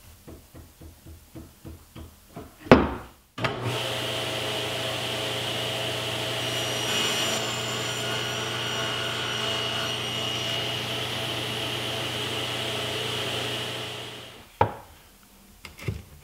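A string of light taps and a sharp knock, then a table saw runs steadily for about ten seconds while a scrap of plywood is fed over the blade, cutting a trial groove to test the fit of the quarter-inch plywood drawer bottom. The saw winds down, and a single knock comes near the end.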